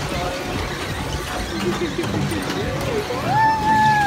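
Steady amusement-park background din with scattered voices; near the end a voice rises into one long high call, held about a second before falling away.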